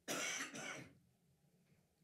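A man softly clearing his throat: a short breathy sound under a second long, in two parts, followed by silence.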